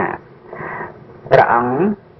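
A Buddhist monk preaching in Khmer: a few spoken syllables, the loudest a drawn-out, gliding one just past the middle.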